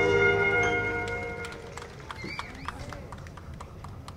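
A big band's final held chord of saxophones and brass dies away over the first second and a half, leaving scattered handclaps and a few voices.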